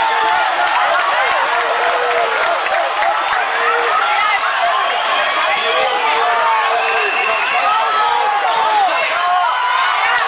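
A crowd of football fans talking and calling out over one another, a steady din of many voices.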